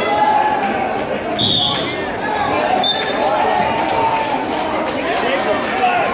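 Spectator voices and shouts in a large gym, with a short, steady, high referee's whistle blast about a second and a half in, starting the wrestling. Two brief, higher chirps follow about a second later.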